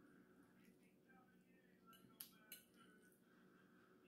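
Near silence, broken just past the middle by two faint, sharp clinks about a third of a second apart: a metal fork against a plate.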